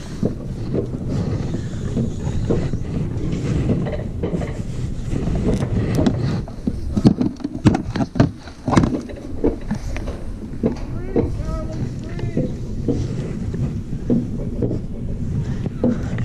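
Alpine coaster sled running down its steel rail track: a steady low rumble from the wheels on the rails, broken by frequent sharp clicks and knocks, with wind buffeting the microphone.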